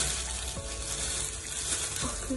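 Disposable plastic gloves crinkling and rustling as bleach paste is worked through hair, a steady crackly hiss.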